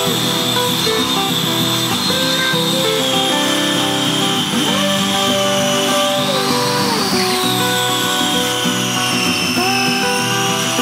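Background music over a circular saw running as it rips a plywood sheet along a straight-edge track; the saw's high whine wavers, rising briefly past the middle and then settling lower.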